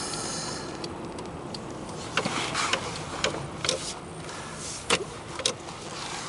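Cabin noise of an early 1992 Toyota Aristo being driven while the steering wheel is turned quickly: steady road and engine noise. A few sharp clicks fall between about two and five and a half seconds in.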